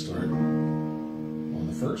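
Electronic keyboard chord struck just after the start and held, ringing steadily. A man's voice comes in near the end.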